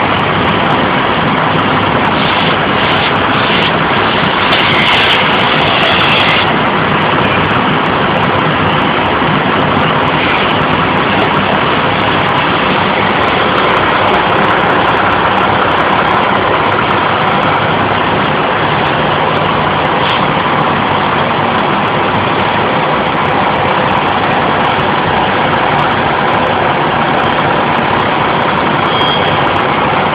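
Fire engine's diesel running steadily at high revs to drive its pump and supply the hose lines, a loud unbroken noise.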